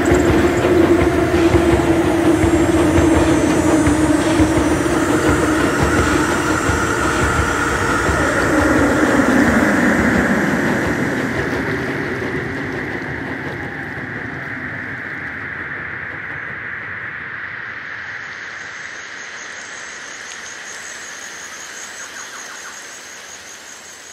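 A layered sound-effects soundscape: a dense noisy mix with a held low tone that slides down in pitch about nine seconds in, over a higher ringing band. The whole mix then fades slowly over the second half.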